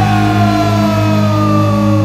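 Stoner-rock band in a held passage: a sustained low drone runs under a single high note that slides slowly and steadily down in pitch.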